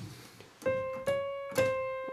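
Three single notes played on an electronic keyboard, about half a second apart, each fading away, pitched around the C above middle C. They pick out the pitch of a sung note, which is found to be C#5.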